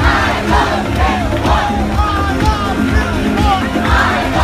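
Live electronic dance music played loud over a festival sound system, with a steady kick-drum beat about twice a second. A dancing crowd is shouting and cheering over it.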